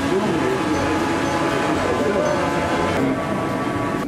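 Quadcopter drone hovering, its propellers giving a steady whine of several tones at once, with voices talking around it.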